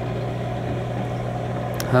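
Steady low drone of a boat engine, with an even haze of wind and water noise over it; a single short click near the end.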